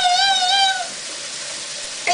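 A child's high-pitched, drawn-out vocal sound, rising at the start and then held for just under a second, over the steady rush of a kitchen tap running onto hands in a steel sink. The tap water continues alone afterwards.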